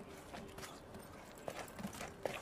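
Several light footsteps of sneakers on pavement, irregularly spaced.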